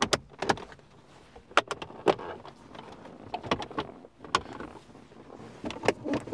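Plastic dashboard trim knocking and clicking as a Ford Fiesta's aftermarket stereo panel is pushed back into the dash, its retaining clips snapping into place. It makes a series of sharp, irregularly spaced clicks.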